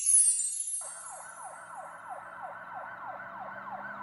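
A falling glissando of chimes fades out over the first second. Then a police siren sound effect comes in, wailing up and down in quick yelps about four or five times a second, and keeps going.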